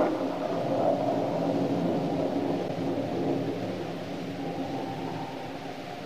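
A scene-ending musical sting from a 1940s radio drama: one held chord, most likely on organ, that comes in loud and slowly fades away.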